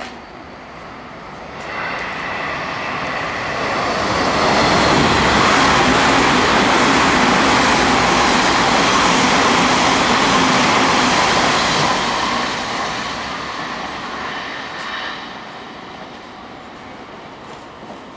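A Hanshin rapid express electric train running through a station at speed without stopping. It grows louder as it approaches, is loudest for about eight seconds as the cars pass, then fades as it goes away.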